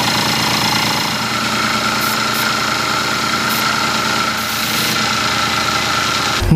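Small electric airbrush compressor running steadily: a dense motor hum with a steady whine over it.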